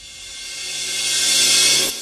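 Logo-intro sound effect: a hissing swell, like a cymbal swell, grows steadily louder, with a low steady tone joining under it about half a second in, and fades away at the end.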